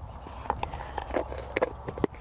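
Several light clicks and taps as a small plastic container and a roll of parafilm are handled and set on a plastic toolbox lid, over a steady low rumble.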